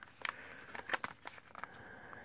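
Faint crinkling and a few light clicks of a plastic-wrapped firework cake being handled and turned over in the hand.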